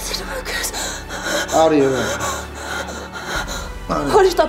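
A woman sobbing and gasping, with one drawn-out cry that falls in pitch about one and a half seconds in.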